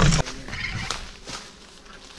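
A short loud burst right at the start, then soft rustling with a few light clicks as bamboo twigs are handled.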